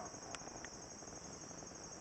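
Steady high-pitched insect chirping with a fast, even pulse, and two faint clicks in the first second.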